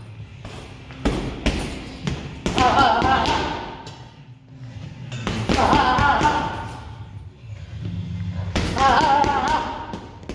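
Boxing gloves striking focus mitts in quick combinations, a string of sharp slaps and thuds. A song with a singing voice plays behind them.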